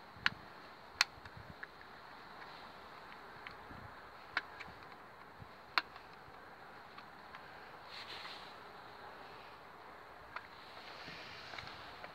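Sharp plastic clicks and taps as a small screwdriver levers plastic spacers into place on the base of a Fiamma caravan door lock. There are a handful of separate clicks, the loudest in the first six seconds, over a faint steady hiss.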